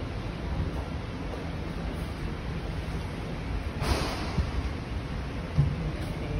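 Wind buffeting a phone's microphone: a steady rushing noise with a low rumble, and a brief louder gust about four seconds in.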